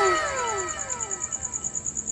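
An added editing sound effect: a series of overlapping whistle-like tones, each sliding down in pitch one after another, over a fast, even high flutter.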